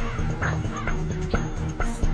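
Background music with sustained tones and a few light hits.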